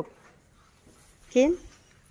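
Quiet background, then one short rising 'huh?' from a woman's voice about a second and a half in.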